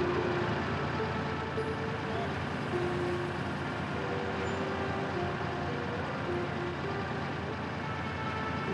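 Dense road-traffic noise of vehicle engines, with music mixed in and short held tones shifting in pitch.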